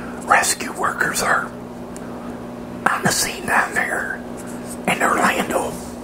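A man whispering in three short phrases, over a steady low hum.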